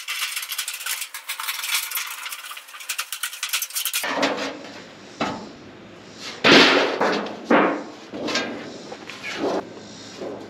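Tin snips cutting through thin 5V sheet-metal roofing, a fast crackling crunch. From about four seconds in, several loud rattling crashes of the sheet metal being handled and flexed follow; the loudest comes about six and a half seconds in.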